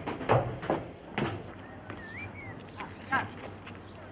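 Footsteps climbing a stairwell: a few separate knocks, with a short high wavering whistle around the middle.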